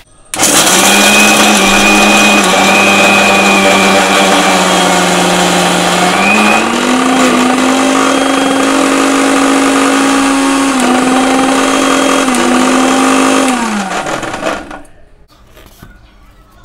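Electric mixer grinder (United) running at full speed, grinding roasted peanuts in its small steel jar. It starts abruptly, runs steadily, and its pitch steps up about six seconds in. Near the end it is switched off and winds down with a falling pitch.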